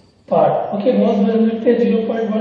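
A man's voice speaking after a brief pause: the teacher talking as he writes on the board.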